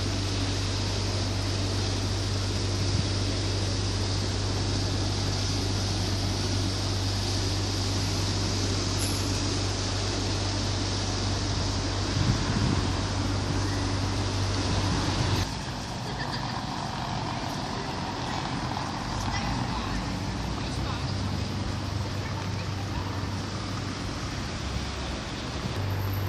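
Steady outdoor street noise with road traffic, and a low steady hum that cuts off abruptly about fifteen seconds in, leaving the background slightly quieter.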